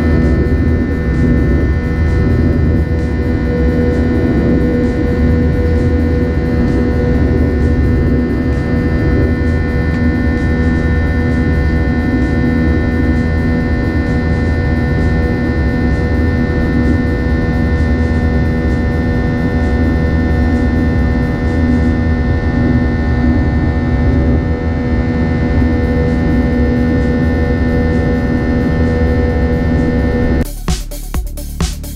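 Jet airliner cabin noise from the underwing turbofan engines: a steady, deep rushing drone with several even humming tones held over it, unchanging throughout.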